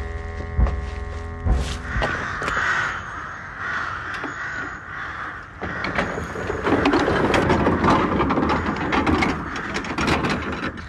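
Crows cawing, many together, a continuous chorus that grows louder in the second half. A held musical chord and a few thuds come first, for about two seconds.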